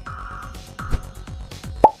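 Electronic background music with a steady drum beat, and near the end a short, loud blip with a quick rising pitch: a transition sound effect as the next question comes up.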